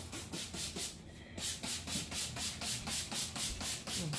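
Hand trigger spray bottle pumped rapidly, spraying cleaner in quick hissing bursts about six or seven a second, with a short pause about a second in.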